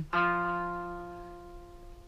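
A single note, F on the third fret of the D string, plucked once on an Epiphone electric guitar and left ringing, fading slowly.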